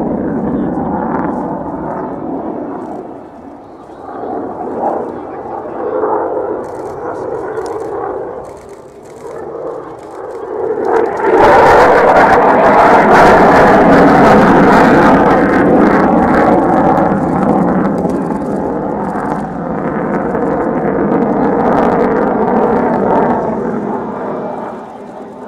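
Jet noise from a flypast by an F-15J fighter's twin Pratt & Whitney F100 turbofans: a wavering rumble that rises suddenly about halfway through to its loudest, then slowly fades as the jet moves away.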